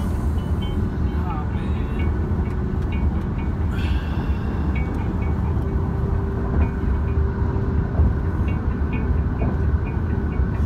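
Road and engine noise inside a moving Toyota car's cabin: a steady low rumble.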